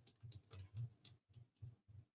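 Near silence with a dozen or so faint, irregular small clicks and soft low knocks, like light handling noise at a desk.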